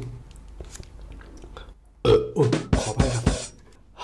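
A man burping loudly, a short run of belches about halfway through, after gulping iced tea through a straw.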